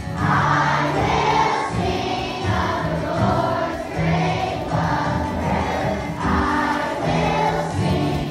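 A group of children and worship leaders singing a worship song together with live band accompaniment, in phrases with sustained notes.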